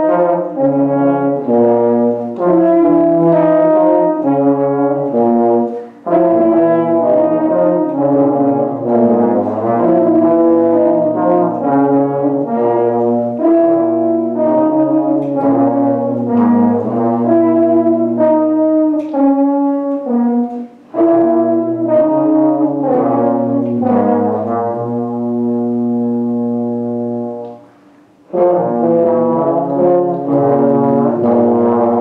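A small brass ensemble of French horns, trombone and low brass playing an improvised blues, short blues-scale licks layered over held low notes. The playing breaks off briefly about six seconds in and again past the twenty-second mark, then pauses for about a second near the end before the group comes back in.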